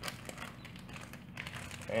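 Faint crinkling and light clicks of a small plastic lure package being handled.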